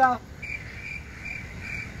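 Cricket chirping: short, evenly spaced chirps at a little over two a second, starting about half a second in, over a low background rumble.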